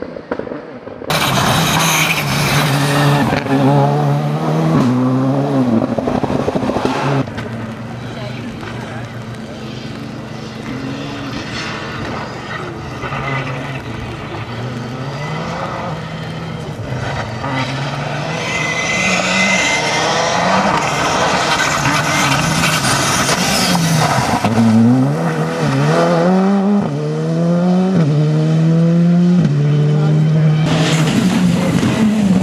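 Škoda Fabia R5 rally car's turbocharged four-cylinder engine revving hard at stage speed, its pitch climbing and dropping with each gear change. It fades to a more distant sound about seven seconds in, then grows louder again near the end with a rising whine as it accelerates.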